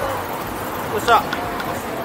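City street ambience: steady traffic noise and chatter of passers-by, with one short, loud vocal cry about a second in.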